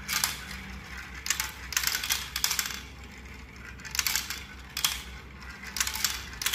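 Marbles clicking and rattling down a plastic marble run, in irregular bursts of clatter with short pauses between.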